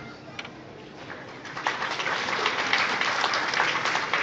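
Audience applauding: scattered claps build into steady applause about one and a half seconds in and grow louder.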